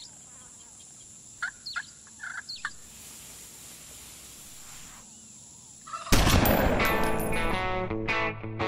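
Recorded song intro: outdoor ambience with a steady high whine and a few short bird-like calls in the first three seconds. A loud band with distorted electric guitar then comes in about six seconds in.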